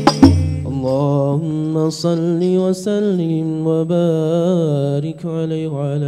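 A man's solo Arabic chant over a microphone, sung in long, wavering melodic phrases with brief breaths between them. The last frame-drum (rebana) strikes of the sholawat group sound right at the start, then the voice goes on alone.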